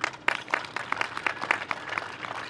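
Small crowd applauding: scattered, irregular hand claps, several a second.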